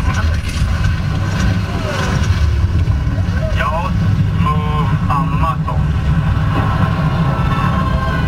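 Steady, heavy low rumble from the Mission Space motion-simulator capsule's onboard sound system as the simulated spacecraft descends toward the Martian surface. Short wavering voice-like sounds come through it in the middle.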